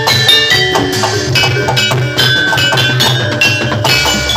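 Jaranan gamelan music: ringing metallophone notes struck in quick succession over a steady drum pulse.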